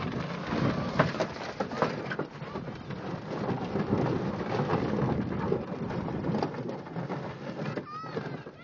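Metal flat-bottomed boat hull being dragged over dirt and gravel: a continuous rough scraping and rattling dotted with many small knocks.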